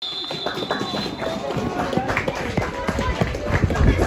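Scattered voices of players and spectators calling out on an open football pitch, with irregular knocks and clicks of handling noise close to the microphone.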